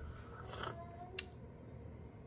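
A quiet sip from a mug, with a single sharp click a little over a second in.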